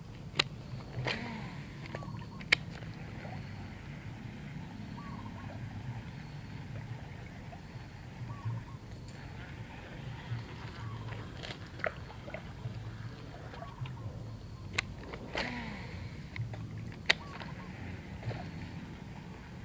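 Quiet outdoor background with a low rumble and a few scattered sharp clicks from handling a baitcasting rod and reel during a cast and retrieve.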